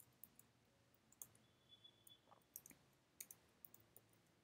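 Faint, sparse keystrokes on a computer keyboard: about ten light clicks spread unevenly over a few seconds, against near silence.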